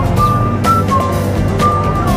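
Live street music from a strolling student band: a steady drum beat about twice a second, with a short high melodic figure of pure notes repeating about once a second over it.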